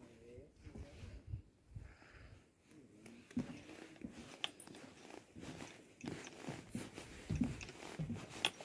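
Faint footsteps on a wooden boardwalk, a series of soft, irregular knocks starting about three seconds in.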